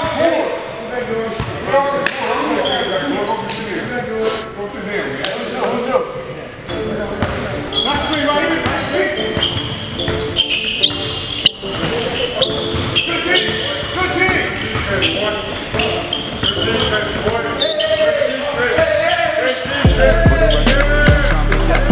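Basketball bouncing on a hardwood gym floor, with players calling out indistinctly, echoing in a large hall.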